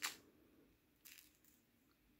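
Near silence with two faint, brief rustles, one at the start and one about a second in, as fingers handle a fine metal jewelry chain and a small clasp.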